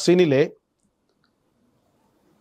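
A man speaking, his phrase ending about half a second in, then a pause of near silence.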